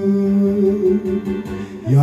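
Male karaoke vocal holding one long note into a microphone over a backing track with guitar. A new sung phrase starts near the end.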